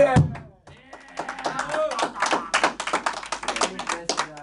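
Strummed acoustic guitars hit a final chord that stops abruptly. From about a second in, a small group of people clap in applause.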